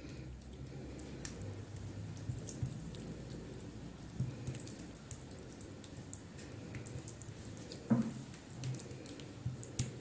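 Faint wet squishing and light scraping as a metal spoon spreads moist minced-meat lahmacun topping thinly over raw dough, with small clicks as the spoon works.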